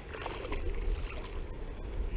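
Low steady rumble with faint water sounds around a kayak.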